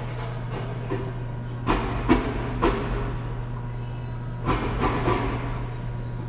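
Digital Measurement Systems 880 vibrating sample magnetometer running an automatic calibration: a steady low hum with sharp knocks, three about two seconds in and three more about five seconds in.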